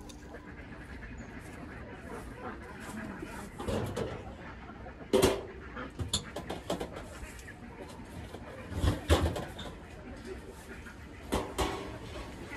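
Scattered knocks and clatter of feed and water bowls being handled and set down at rabbit hutches. The sharpest knock comes about five seconds in, with a dull thump a few seconds later and a couple more knocks near the end.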